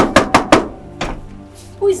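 Knocking on a door: four quick, loud raps, then one more about a second later, over soft background music.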